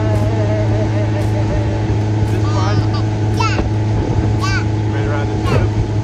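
Motorboat engine running with a steady low hum, while voices call out briefly over it several times.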